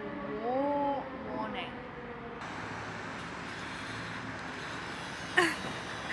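A woman's drawn-out vocal note in the first second that rises and then falls in pitch, followed by a shorter vocal sound. After a cut, steady outdoor street noise, with one sharp, short sound near the end.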